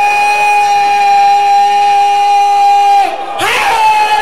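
A man's voice holding one long, steady high note through the loudspeakers over a cheering crowd, breaking off about three seconds in.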